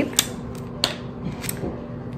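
Handling of a small handheld tape dispenser while a piece of clear tape is pulled and torn off: three light, sharp clicks, the middle one the loudest.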